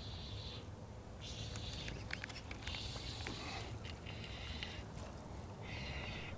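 Spinning reel being cranked in short bursts while a hooked largemouth bass is played in: about five quiet whirring runs of under a second each, with brief pauses between, over a faint low rumble.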